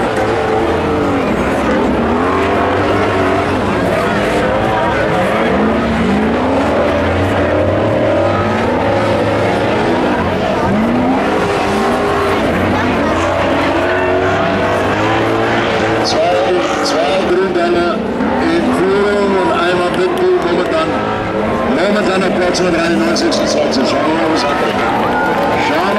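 Several stock-car engines racing on a dirt track, each revving up and falling back again and again as the cars go through the turns, the revs overlapping.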